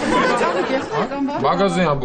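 Speech only: people talking back and forth in a dialogue.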